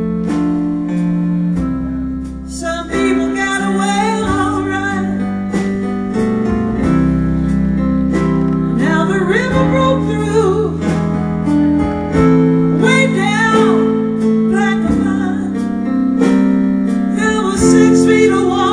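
Live band music: an instrumental passage of the song, with a guitar playing lines with bent notes over held bass notes.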